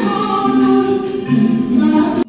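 Music with singing: sung notes held and moving from one pitch to the next.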